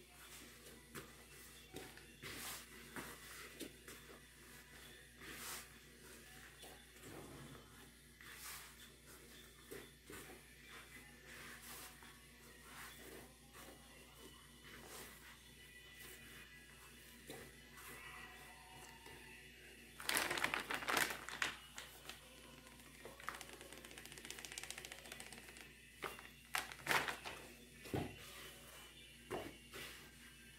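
Hands kneading bread dough in a plastic bowl: faint, scattered slaps and taps, with a louder burst of noise about twenty seconds in and a few sharper knocks near the end.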